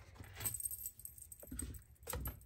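Tarot cards being handled in the hands: light rustling and tapping of card stock as the cards are shifted against one another, in two brief spells about a second apart.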